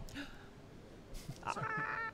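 A person's short, high-pitched drawn-out vocal sound, like a held 'mm', about one and a half seconds in, over quiet room noise.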